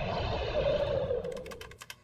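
A low rumbling drone that swells and then fades out, followed from about a second in by rapid clicking of fingers typing on a computer keyboard, roughly eight or ten keystrokes a second.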